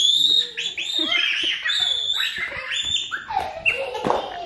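A toddler's high-pitched squeals, a string of short rising and falling shrieks repeated several times.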